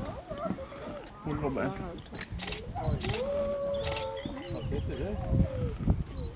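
Grey wolf howling: one long, steady howl that starts about three seconds in, holds for nearly three seconds and sags slightly in pitch as it ends.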